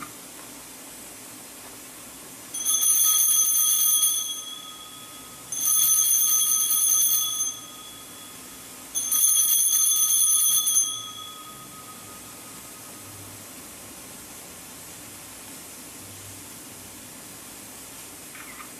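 Altar bells (Sanctus bells) shaken three times in a row, each ring lasting about one and a half to two seconds, with the last fading out near the middle. They mark the elevation of the consecrated host at Mass.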